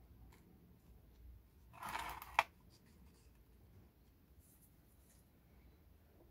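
Fingers pressing potting soil down in a thin plastic pot, heard as one short scratchy rustle about two seconds in that ends in a sharp click. Otherwise faint room tone.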